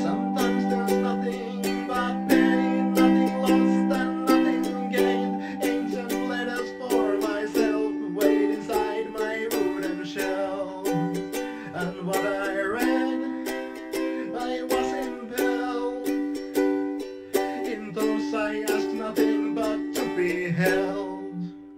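Lofi ukulele music in an instrumental passage: ukulele chords plucked in a steady rhythm.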